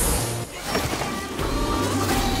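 ESPN broadcast graphics transition sting: music with a sharp hit at the start, a short drop about half a second in, then a swell.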